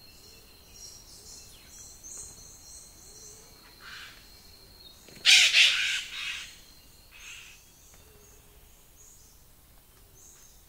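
Forest birds calling: one loud, harsh, crow-like call about five seconds in, lasting about a second, with softer harsh calls just before and after it and faint high chirps throughout. A steady high tone runs underneath and stops about four seconds in.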